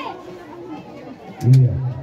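Spectators' voices talking beside the pitch, with one voice calling out loudly about one and a half seconds in. A brief sharp click comes just before it.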